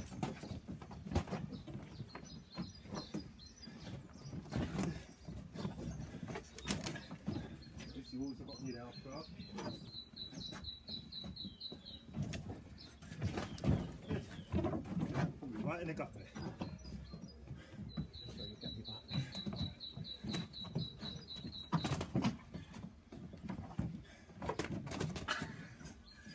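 Irregular slaps and thuds of boxing gloves landing during sparring, with feet shifting on wooden decking. A small bird's rapid, high trill sounds twice, briefly about ten seconds in and for a few seconds from about eighteen seconds.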